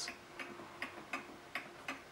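A late-1920s Sessions Berkeley tambour mantel clock ticking steadily, a bit over two ticks a second.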